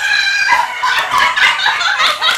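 A woman's long, high-pitched excited cry of greeting, held steady for about a second and then breaking into shorter rising and falling notes.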